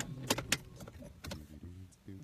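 Two sharp clicks about a quarter of a second apart inside a car, followed by faint low rustling.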